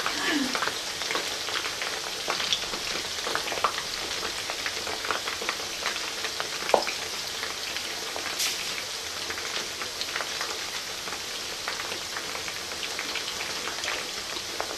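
Chicken wings deep-frying in a wide pan of hot oil: a steady, dense sizzle and crackle of bubbling oil, with one sharper pop about seven seconds in.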